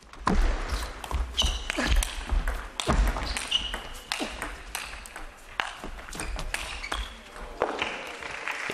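A table tennis rally between a chopper and an attacker: the ball clicks sharply off rackets and the table in an uneven back-and-forth. Short high shoe squeaks on the court floor and low thuds of footwork come in between the clicks.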